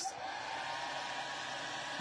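Small electric blower running for about two seconds: a steady rushing hiss with a faint motor whine, starting and stopping abruptly.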